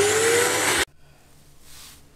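Vacuum cleaner motor running up to speed, its whine rising in pitch over a loud rushing noise; it cuts off abruptly under a second in. A faint steady hum from inside a moving car follows.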